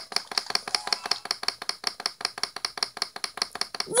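Rapid, evenly spaced clicking, about eight clicks a second, with no speech over it.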